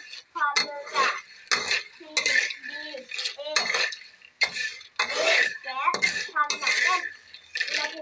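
Metal spatula scraping across a dry metal pan, turning roasting kabok (wild almond) seeds so they rattle against the pan, in repeated strokes one or two a second.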